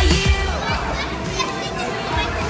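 Excited children's voices and chatter over pop music playing.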